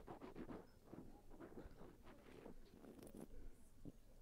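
Faint wet crackling and swishing of champagne being swished around the mouth, its bubbles foaming into a mousse.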